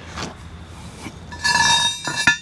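Steel box-section pallet-fork parts clinking together as they are handled. About one and a half seconds in, a clear metallic ring lasts about half a second.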